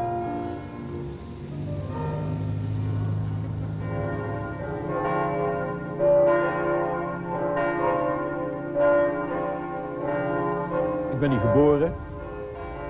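Church bells ringing in a tower: a run of separate strikes at several different pitches, each ringing on, beginning about four seconds in over a low steady hum.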